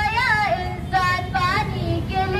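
A girl singing in a high voice into a microphone, in short phrases with notes that bend up and down.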